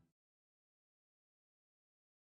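Silence: the audio track is empty, just after the closing music has faded out.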